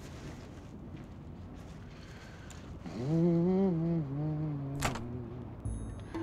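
Quiet street ambience, then about halfway through a man hums two long, slow notes, the second lower than the first. A short sharp click follows.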